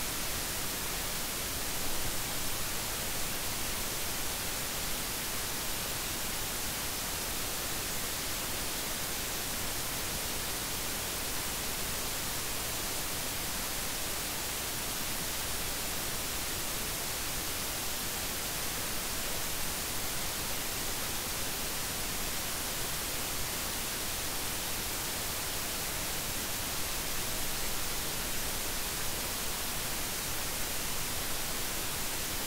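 Steady, even hiss with no change in level and no other sound in it.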